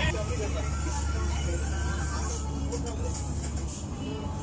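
Low, steady engine rumble of a cruise boat, weakening near the end, with people talking in the background.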